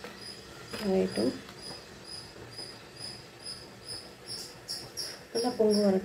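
A cricket chirping steadily, about two to three short high chirps a second. A person's voice is heard briefly about a second in and again near the end.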